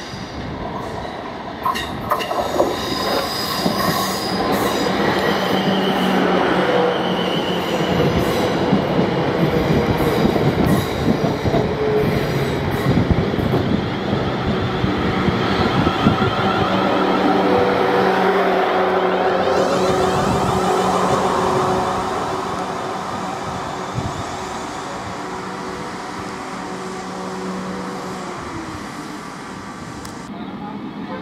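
Electric multiple-unit trains running through a station: wheels clicking over rail joints and points early on, a continuous rumble of wheels on rail with thin wheel squeal on the curved track, and a steady electric motor whine. The noise builds over the first few seconds and eases off after about 22 seconds.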